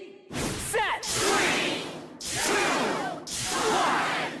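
Shouted Beyblade launch countdown in four loud bursts about a second apart, voices from the crowd and bladers layered with whooshing sound effects, leading into the launch.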